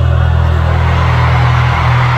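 Loud live band music through an arena PA: a deep bass note held steady under a dense wash of sound.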